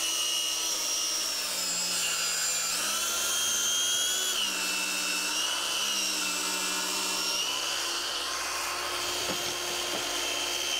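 Cordless Craftsman circular saw running through a cut across the end of a wooden door. Its motor whine holds steady, shifting up and down in pitch a few times as the load on the blade changes.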